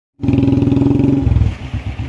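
Motorcycle or scooter engine running loud and steady, then dropping about a second and a half in to a quieter, slower, evenly pulsing run.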